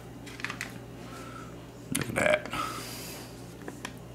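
A short vocal sound about two seconds in, followed straight after by a brief papery rustle as a pouch of cheese sauce powder is torn open, with a few small handling clicks and a low steady hum underneath.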